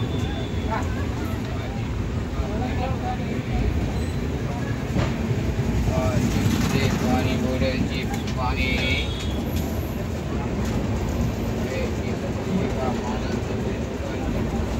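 Steady rumble of a passenger train running, heard from inside the coach through an open barred window, with passengers' voices in the background.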